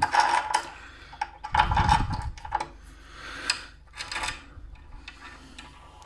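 Hand-handling of a screw, washer and flat steel shelf bracket against a wooden shelf and tiled wall: scattered light clicks, taps and rubbing, busiest in the first two and a half seconds.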